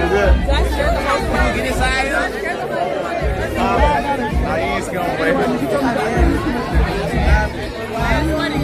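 Crowd chatter, with several people talking over one another, over loud music with a heavy bass.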